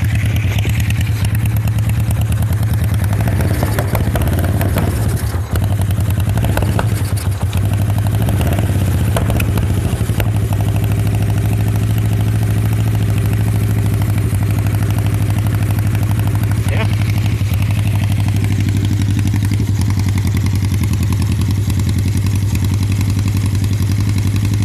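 Suzuki GS400X air-cooled parallel-twin motorcycle engine idling steadily. The intake gaskets and O-ring are new, but the owner thinks it still needs something and suspects the old intake clamps are bad.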